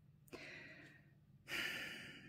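A tarot card slid across a tabletop with a soft swish, then a breathy sigh about one and a half seconds in, fading away over about a second.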